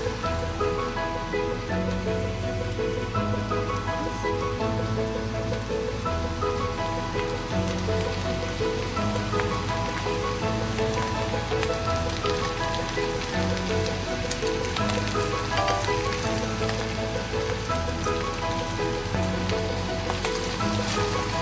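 Background music with a melody and a bass line, over a continuous sizzle from ground beef, green beans and carrots frying in a pan.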